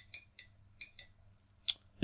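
Light, sharp clicks of a small input switch on a PLC trainer, about six in two seconds at an uneven pace. The switch is being worked repeatedly to step a counter down.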